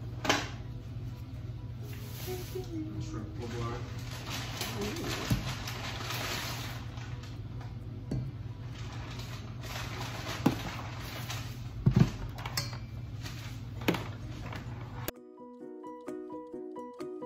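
Bowl and utensils knocking and clinking several times as frosting is worked, over a steady low hum. About a second before the end the sound cuts abruptly to music.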